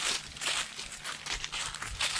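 Footsteps crunching over dry fallen leaves on a dirt path, a run of uneven crackly steps.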